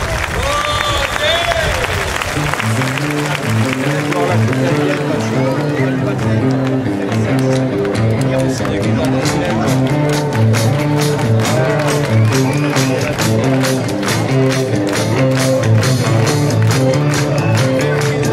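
Live rock band playing a 1960s British Invasion-style number: an electric bass line with electric guitar and drums comes in about two and a half seconds in, after a brief stretch of crowd noise. From about six seconds in, a steady beat of hand claps joins in time with the music.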